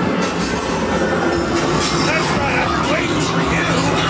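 Loud haunted-maze soundtrack of rumbling, machinery-like industrial noise with a steady low hum. About halfway through, a scare actor's voice joins in, calling out in long, bending tones.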